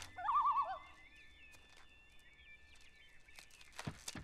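Birds calling: a loud warbling call in the first second, then faint high chirping, with a few short clicks near the end.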